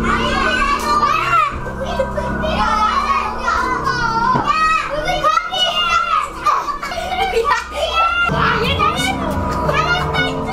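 Several young children playing, with high squeals and excited shouts overlapping one another, over background music with steady held notes.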